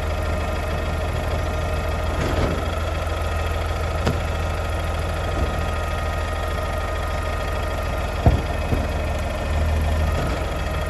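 Mack LEU garbage truck's engine idling steadily, with a few short sharp knocks about four seconds in and twice near the end, and the hum growing slightly louder just before the end.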